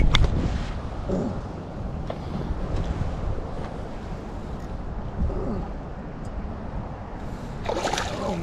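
Water sloshing and lapping against a small boat's hull on choppy water, with a low rumble of wind on the microphone.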